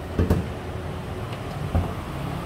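Chevrolet Cruze idling: a low steady rumble, with two short knocks, one about a quarter second in and one near the end.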